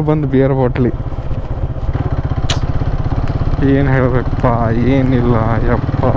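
Motorcycle engine running steadily under way on a rough dirt track. A person's voice rises over it in the first second and again from about three and a half seconds on.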